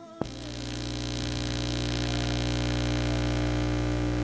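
A sharp click, then a steady electrical hum and buzz through the sound system, growing a little louder over the first couple of seconds and then holding.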